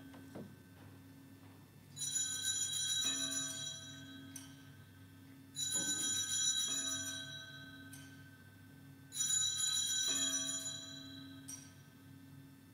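Altar bells (sanctus bells) rung three times, about three and a half seconds apart, each ring dying away slowly: the bell rung at the elevation of the Host at the consecration.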